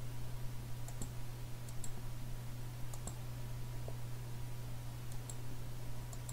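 Computer mouse button clicking slowly, single clicks about a second apart, as points are placed one by one along a cut path. A steady low hum runs underneath.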